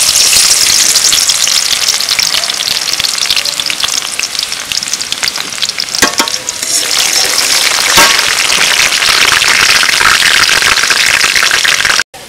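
Chopped onion sizzling in hot cooking oil in a metal wok, stirred with a metal spatula. The sizzle is loud throughout, eases a little in the middle and builds again, with a sharp knock about halfway through and another a couple of seconds later.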